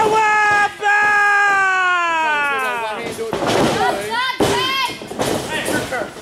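A long, drawn-out shout of disbelief, "what", held on one high pitch for about three seconds and then sliding down, followed by more excited yelling.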